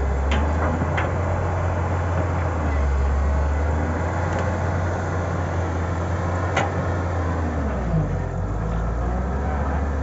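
Samsung wheeled excavator's diesel engine running steadily under load while the machine digs and dumps soil, its low note shifting about eight seconds in. A few sharp knocks sound near the start and again about six and a half seconds in.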